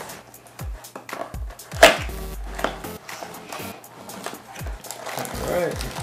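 A small cardboard box being handled and a ball head in a plastic bag drawn out of it: rustling, scraping and light knocks, the sharpest knock about two seconds in. Background music with a low, regular beat plays underneath.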